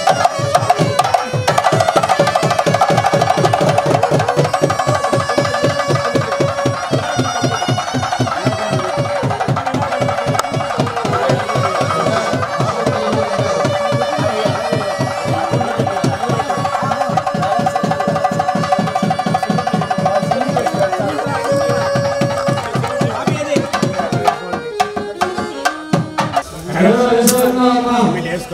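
Traditional Indian ritual music: rapid, continuous hand-drumming under a sustained, wavering wind-instrument melody. The music thins out near the end, where a voice comes in.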